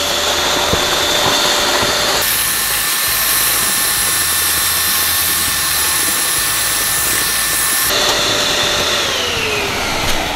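Electric balloon inflator running steadily, blowing air through its hose into a balloon that swells as it fills. The air rush turns hissier for several seconds in the middle, and the motor's pitch falls near the end as it winds down.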